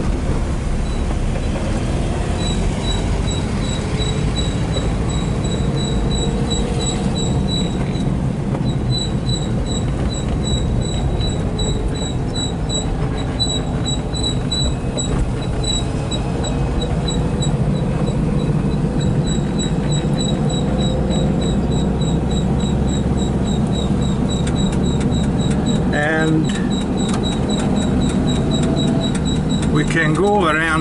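Air-cooled flat-four engine of a 1977 Volkswagen campervan running under way, heard from inside the cabin as a steady low drone with road noise, its pitch rising and falling a little with speed. A light, high, regular ticking runs over much of it, about three ticks a second.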